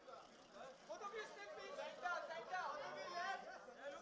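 Faint background chatter of several people talking at once.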